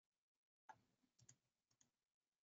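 Near silence, with a few very faint clicks in the second half.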